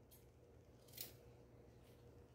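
Dressmaking shears giving one quiet, short snip through a fabric strip about a second in, with a fainter snip near the end.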